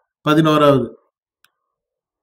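A man speaking briefly in Tamil for under a second, then silence broken by one faint click.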